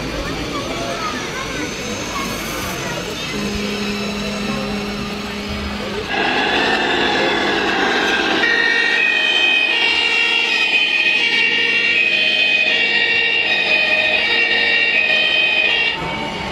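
Two-tone siren of a radio-controlled model fire truck, high and low notes alternating under a second apart, starting about halfway in. Before it there is crowd chatter in a hall.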